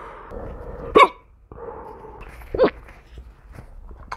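A man hiccuping twice, about a second in and again about a second and a half later, with quieter breathing sounds between. The hiccups began with a coughing fit.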